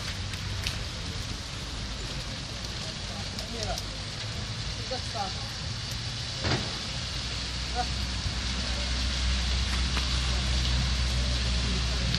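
Street traffic on a slushy road: a steady wet hiss of tyres, with a vehicle's low rumble building through the second half. Faint voices in the background.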